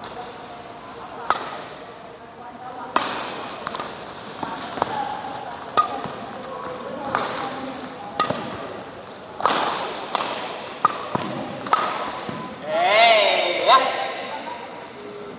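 Badminton rackets striking a shuttlecock in a singles rally: sharp hits about once every second or so, each ringing briefly in a large hall. A wavering squeak sounds near the end.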